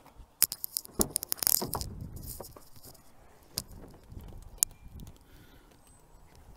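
Clicks and rattles of a car door being opened, a quick run of them in the first two seconds, then a few scattered clicks.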